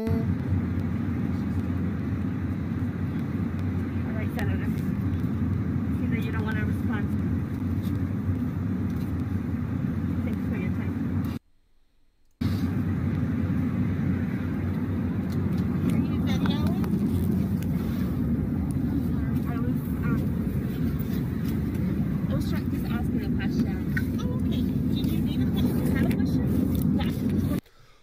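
Steady low roar of an airliner's cabin noise in flight, heard through a phone recording, with faint passengers' voices over it. It cuts out briefly about eleven seconds in, then resumes.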